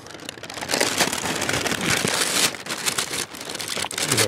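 Water pouring and splashing into a hot-water storage tank, a dense crackly splashing that swells about half a second in, with a hand stirring through the water near the end.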